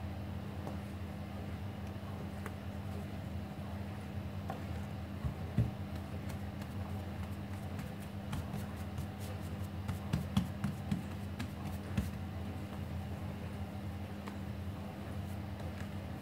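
Hands patting, dimpling and folding soft sourdough bread dough on a floured countertop: light, irregular taps and soft slaps, thickest in the second half, over a steady low hum.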